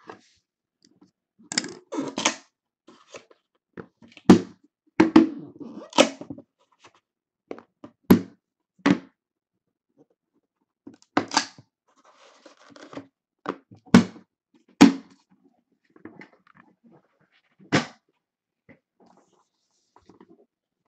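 Cardboard trading-card boxes being lifted, shifted and set down on a table: about a dozen separate knocks and thuds spread unevenly through the stretch, with brief sliding and rustling between them.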